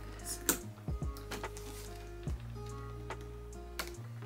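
Soft background music with held notes, over which a handful of short clicks and taps come from a boxed figure being handled and its side seals cut, the sharpest about half a second in.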